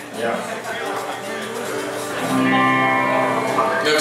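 Plucked string instrument played through the PA: a few loose notes, then a chord held and ringing for about a second and a half near the end.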